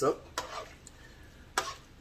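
A utensil stirring and scraping against a pan of sauced pasta, with two brief scrapes a little over a second apart and quiet between them.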